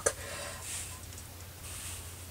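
Soft rustle of cotton fabric pieces being slid and patted flat by hand on a cutting mat, in two faint brushes, over a low steady hum.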